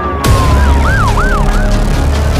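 A siren sounding in quick rising-and-falling wails, after a long falling tone, over heavy low bass music, with a sharp hit about a quarter second in.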